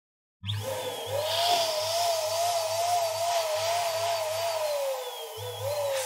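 Electric balloon pump running with a low hum as it inflates a latex balloon, cutting out briefly about five seconds in and starting again. A wavering, warbling musical tone sounds over it and slides downward near the end.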